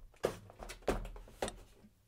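Cardboard and plastic packaging being handled as an action figure's plastic tray is slid out of its box and laid on the table: a few soft knocks and scrapes.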